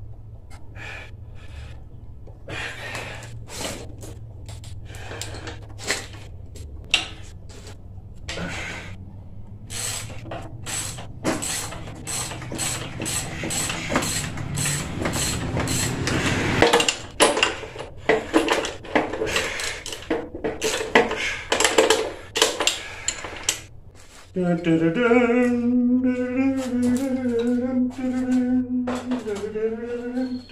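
Rapid metal clicks and knocks of a hand tool working on a go-kart clutch fitted to a small engine's crankshaft, growing busier and louder midway. Near the end a person hums one held, wavering note.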